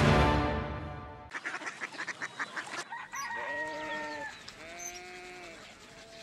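A short music sting fades out in the first second, followed by a quick run of rattling clicks. Then a rooster crows: one long held call about three seconds in, and a shorter arched call just after it.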